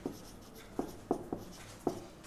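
Marker pen writing on a whiteboard: about five short, quick strokes, faint against a quiet room.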